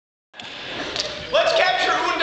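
Voices on a stage in a large hall: low room noise with a couple of knocks, then loud raised voices from about a second and a half in.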